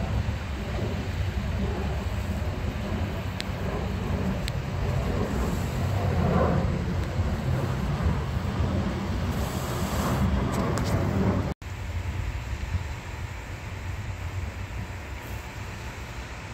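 Twin-engine jet airliner passing overhead: a steady low engine rumble mixed with wind on the microphone. The sound drops out abruptly for an instant a little over halfway through, then carries on somewhat quieter.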